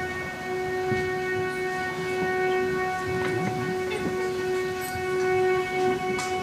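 One steady, unchanging note from the stage, rich in overtones and held through the whole stretch like a drone, opening the next song. Faint audience stir and a few small knocks sit underneath it.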